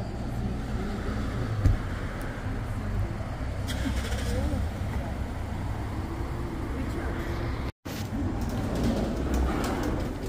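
Road traffic and nearby vehicles running, a steady low rumble, with one sharp thump a little under two seconds in. The sound cuts out completely for a moment about eight seconds in.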